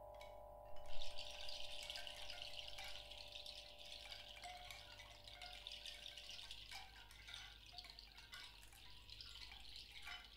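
A bundle of hand-held chimes shaken and rattled, a dense, quiet tinkling of many small strikes that starts abruptly about a second in. Under it, sustained ringing tones from earlier mallet or bowl strokes die away about two-thirds of the way through.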